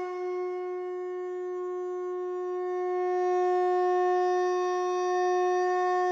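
A conch shell blown in one long, steady note that grows a little louder about halfway through.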